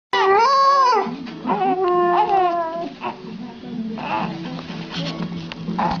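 A baby crying, with a husky whining and howling along beside it: two long, wavering, pitched wails in the first three seconds, then shorter cries.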